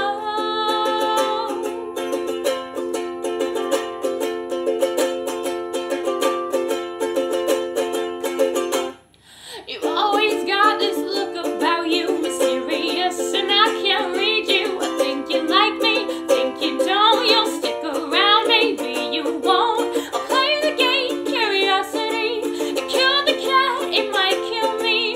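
Ukulele strummed in chords as an instrumental break in an acoustic song. The strumming stops suddenly about nine seconds in and starts again a second later with busier strokes.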